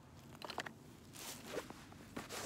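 Faint handling sounds: a few light clicks about half a second in and again near the end, with a soft rustle between them.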